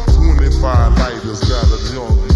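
Hip hop track: a man rapping over a beat with deep, heavy bass.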